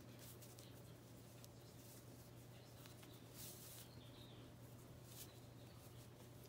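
Near silence: faint brushing of thick twisted cotton macrame cord as it is pulled through a square knot, over a steady low hum.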